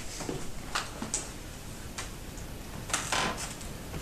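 Movement noise from people in a small room: a few scattered light knocks and clicks, with a small cluster about three seconds in.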